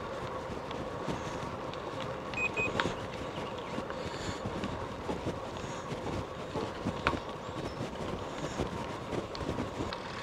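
Road bike rolling along a tarmac trail: steady tyre noise with the bike's occasional light clicks and rattles over the surface.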